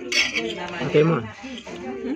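Cutlery and dishes clinking at a dining table, with a sharp clink right at the start, while a voice talks over it.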